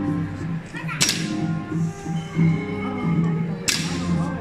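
Brass ensemble music with sustained, changing notes, broken by two sharp cracks, one about a second in and one near the end.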